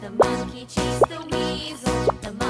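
Upbeat children's background music with plop sound effects laid over it: two short upward-sweeping blips, one just after the start and one about a second in.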